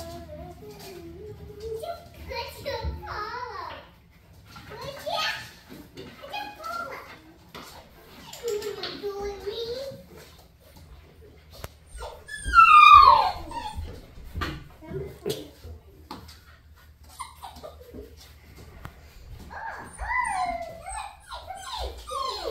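Puppies whimpering and yipping on and off in short high calls, with one loud whine a little past halfway that falls steeply in pitch.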